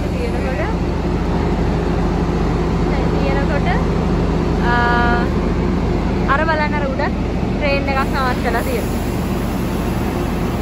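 Steady low hum of a Tri-Rail double-deck commuter train idling at the platform, with people's voices over it and a short beeping tone about five seconds in.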